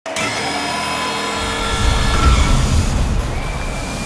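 Show-intro sound effects over an arena PA: several held tones over a hiss, then a deep rumble that swells up from about a second and a half in.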